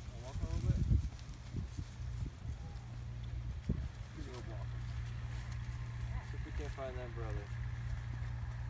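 Intermittent voices, short phrases and vocal sounds, over a steady low rumble.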